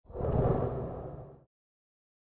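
Whoosh sound effect for a logo reveal, swelling in quickly and fading out over about a second and a half.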